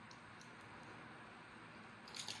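Near silence: room tone, with a few faint ticks near the start.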